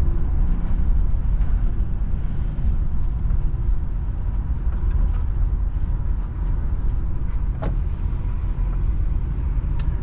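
Steady low rumble of a car's engine and tyres while driving slowly through town, heard from inside the cabin, with a couple of faint clicks near the end.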